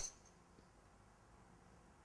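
The brief high ring of a golf driver's strike on the ball dies away at the very start, then near silence.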